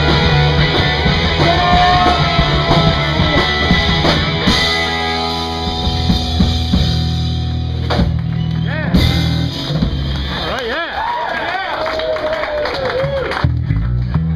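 Live rock band playing loudly with distorted electric guitars, bass and drums: held, ringing chords broken by several cymbal crashes, with gliding pitched squeals over the top in the second half.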